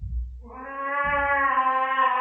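A cat's yowl slowed down into a long, low, drawn-out howl that holds one pitch, starting about half a second in: the cat's protest at having a spot-on flea treatment put on. Low thumps come at the start and about a second in.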